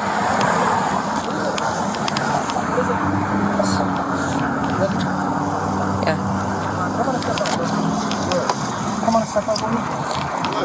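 Steady roadside traffic noise with the low hum of car engines, picked up by a police body camera's microphone.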